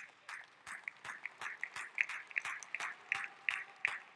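Light applause: separate hand claps, several a second and irregular, with the man on stage clapping along.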